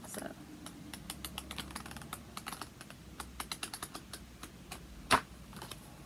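Sheets of an Arnhem 1618 fine art paper pad flicked through with the fingers: a quick, irregular run of crisp page snaps, with one louder snap about five seconds in.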